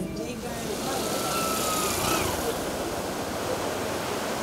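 Ocean surf breaking against a rock-lined shore, a steady rushing noise, with a motorcycle riding past; a faint, slightly falling engine whine is heard about a second in.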